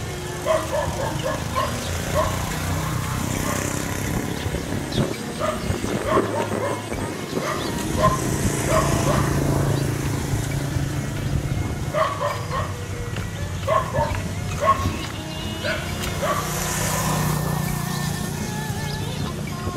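Animals giving short, sharp calls again and again in quick clusters throughout, over a steady low hum.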